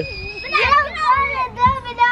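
Young children's high-pitched voices calling and squealing at play. A long, held squeal breaks off about half a second in, followed by short calls that rise and fall in pitch.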